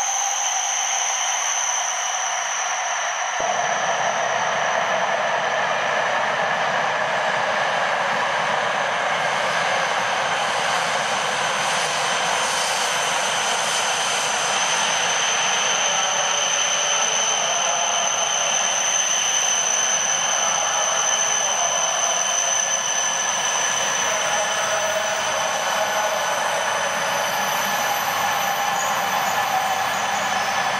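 A Shinkansen train running slowly along an underground station platform: a steady rushing rolling noise with constant high whining tones over it. A low rumble joins about three seconds in.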